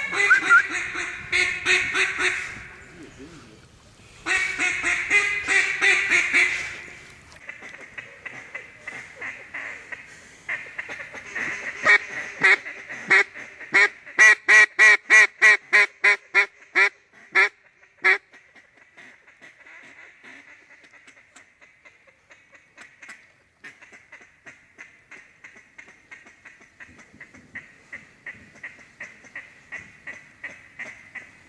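Mallard duck calls blown close by. Two loud spells of fast feed-call chatter come first, then a long run of loud, evenly spaced quacks, then softer scattered quacks while ducks circle overhead.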